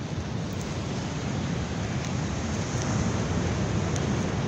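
Steady rushing noise of wind on the microphone mixed with the wash of ocean surf.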